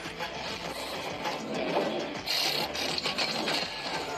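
Mechanical whirring and clicking of a robot combat drone's servos and joints as it starts up and moves during a test run, a television sound effect.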